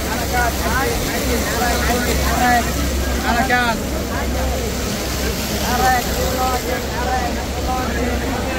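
Dense crowd of many voices talking and calling over one another, with a steady low rumble underneath.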